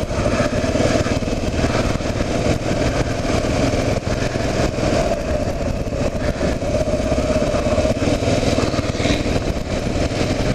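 Single-cylinder engine of a 2009 Kawasaki KLR 650 motorcycle running steadily at low road speed, heard from a helmet camera along with a steady rush of noise.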